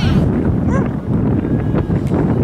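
Wind buffeting the camera microphone: a loud, uneven low rumble, with a brief faint distant call about three-quarters of a second in.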